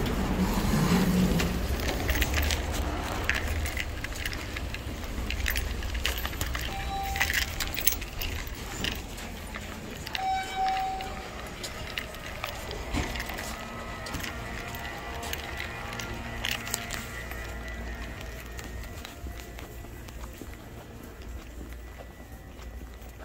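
Footsteps while walking through a parking garage and into a building corridor, over a low rumble. Two short beeps come about seven and ten seconds in, and faint background music is heard in the later part.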